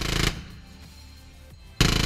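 MLG 27 naval remote gun mount's 27 mm Mauser revolver cannon firing two short, rapid bursts: one stops just after the start, and the next begins near the end.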